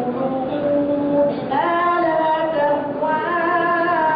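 A solo voice chanting Quranic recitation in the melodic tajwid style, holding long, drawn-out notes; a new phrase begins about a second and a half in, gliding up in pitch.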